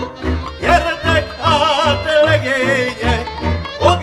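Hungarian Gypsy band playing a magyar nóta passage without singing. A lead violin plays with wide vibrato, sliding up into notes about a second in and again near the end, over a pulsing double bass and cimbalom accompaniment.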